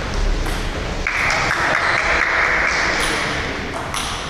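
Table tennis ball clicking sharply off the paddles and the table during a rally, a few hits spread across the moment. A steady hiss runs beneath it from about one to three seconds in.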